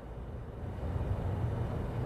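Low, steady background rumble with no distinct event in it.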